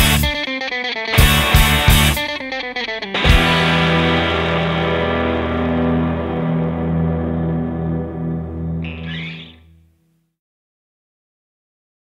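The ending of a rock song: the full band plays a few stop-start hits, then strikes a final chord about three seconds in. The chord rings out on electric guitar and bass and dies away to silence a couple of seconds before the end.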